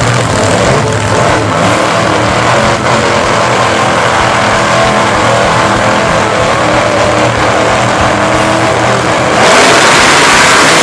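Supercharged V8 of a nostalgia funny car running at the starting line, a loud steady engine sound. About nine seconds in it jumps suddenly louder and harsher.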